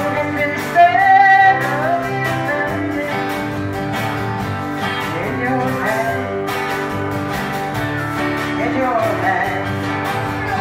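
A woman singing a country song live, accompanying herself on a strummed acoustic guitar with a band behind her. Her voice is loudest about a second in.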